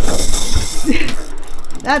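Fishing reel being cranked, its gears running loudly through the first half-second or so and more faintly after. A short voice exclamation comes about a second in.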